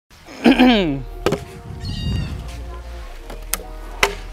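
A man clears his throat with a short vocal sound that falls in pitch. It is followed by a couple of sharp clicks and faint handling noise.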